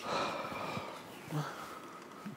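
A person's breathy exhale, starting suddenly and fading over about a second, followed by a brief low murmur.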